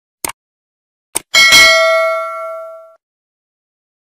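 Subscribe-button animation sound effects: a mouse click, a second click about a second later, then a bright notification-bell ding that rings and fades out over about a second and a half.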